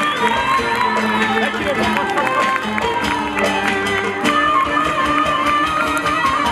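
A live Turkish folk band plays an instrumental passage with a steady beat, on bağlama (saz), keyboard and drums.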